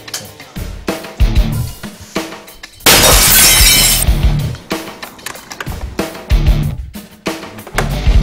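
Background music, with a loud crash of breaking glass about three seconds in that lasts about a second.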